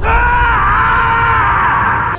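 A man lets out one long, drawn-out yell held on a single slightly wavering pitch, an exaggerated cry of disgust.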